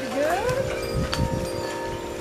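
Hanging tubular metal wind chimes ringing in the breeze: several steady tones sound together, and a fresh strike about a second in adds a higher note that rings on.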